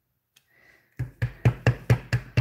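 Near silence, then about halfway through a clear acrylic stamp block starts tapping rapidly on an ink pad, about six sharp taps a second, inking the stamp.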